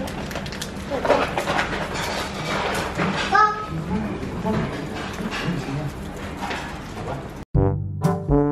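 Indistinct voices with crinkling of plastic snack packets as they are torn open. Near the end the sound cuts out for an instant and a brass music sting begins.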